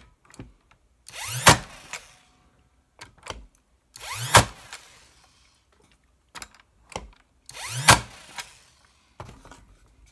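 Porter-Cable 20V cordless 18-gauge brad stapler firing three times, a few seconds apart, driving one-inch staples into wood. Each shot is a short rising whine that ends in a sharp crack.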